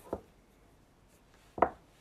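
Mahjong tiles clacking: two sharp clicks, one just after the start and a louder one about a second and a half later.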